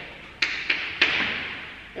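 Chalk tapping and scraping on a chalkboard as words are written: three or four sharp taps a third of a second or so apart, each fading quickly.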